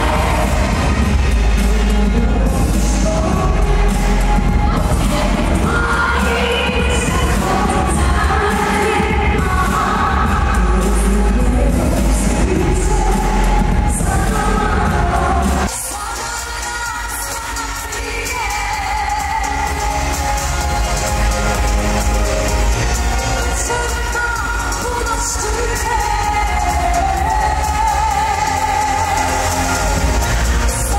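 Female pop singer singing live into a microphone over an amplified pop backing track with heavy bass. About halfway through, the bass and beat drop out abruptly and the singing carries on over lighter accompaniment.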